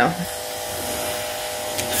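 A steady electric motor hum with a few held tones, running at an even level until shortly before the end.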